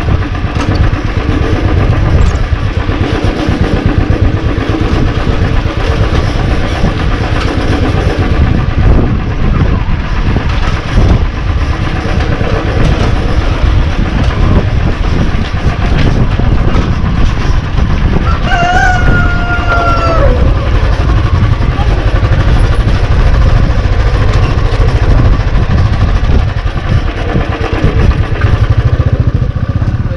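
Motorcycle engine running steadily as the bike rides along a dirt road. About two-thirds of the way through, a rooster crows once, a call of about two seconds that falls away at the end.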